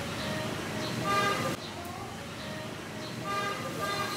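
Vehicle horns honking twice, each about half a second long, about a second in and again near the end, over steady street traffic noise.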